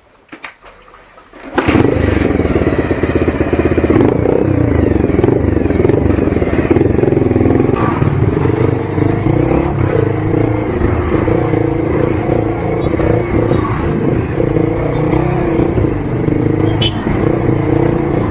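Single-cylinder engine of a modified Bajaj Pulsar 150 running under way in traffic, its pitch rising and falling with the throttle, recorded through an action camera's built-in microphone with road and wind noise. The sound comes in abruptly about a second and a half in, after near quiet.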